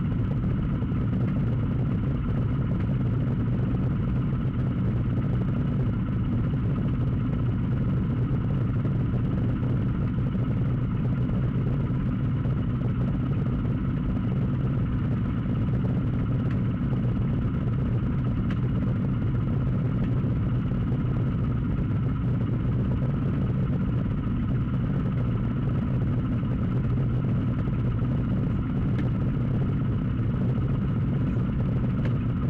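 A car engine idling steadily, heard from the parked vehicle the camera is mounted in.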